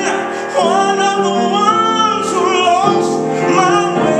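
A slow gospel song sung with vibrato over grand piano. After a brief dip the voice comes back in about half a second in with long held, wavering notes.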